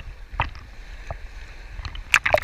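Small sea waves lapping and sloshing against a camera's waterproof housing at the water surface, under a steady low rumble of moving water. There is a sharp splash about half a second in, a smaller one after a second, and another beginning just at the end.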